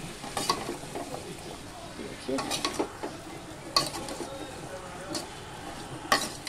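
A spatula stirring potato and cauliflower pieces with ground spices in a metal kadhai of hot mustard oil, frying with a low sizzle. A few sharp clinks and scrapes of the spatula against the pan come through, a cluster of them about two and a half seconds in.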